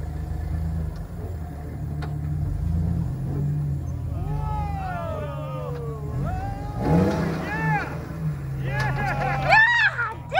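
Off-road Jeep's engine running low and steady as it climbs a steep rock ledge, heeling over toward a rollover and recovering. From about four seconds in, onlookers shout and call out, loudest near the end.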